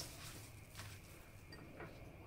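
Faint soft handling sounds of hands rubbing a dry spice rub into a raw beef tri-tip on a plastic cutting board, with a couple of light ticks.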